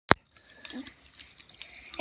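A sharp click at the very start, then faint crackling and fizzing: Pop Rocks candy popping in Sprite.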